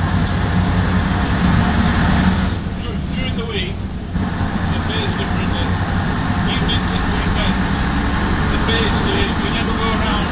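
Leyland PD2 double-decker bus's six-cylinder diesel engine heard from inside the lower saloon, running steadily under way. About two and a half seconds in the engine sound drops away for a second and a half, then picks up again.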